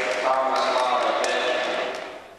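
Loud, unclear voices echoing in a gymnasium, with a few sharp knocks among them. The sound begins to fade out right at the end.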